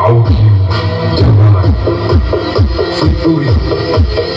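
Electronic dance music played loud through a stacked karnaval sound system of two subwoofer boxes and eight mid-range boxes, with heavy bass and repeated falling pitch sweeps.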